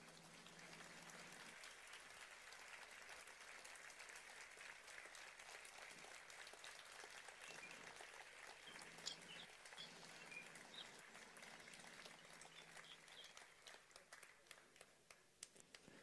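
Faint audience applause, thinning out near the end.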